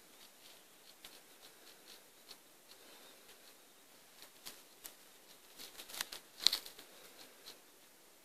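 Faint, irregular clicks and crackles over a quiet hiss, growing more frequent toward the middle, with the loudest cluster of sharp clicks about six and a half seconds in.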